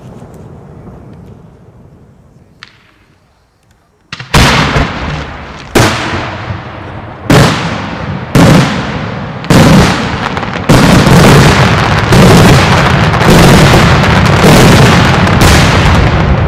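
Daytime aerial firework shells exploding. A low rumble fades out, then from about four seconds in loud single bangs go off about once a second, each trailing away. From about eleven seconds in they merge into a dense, continuous barrage.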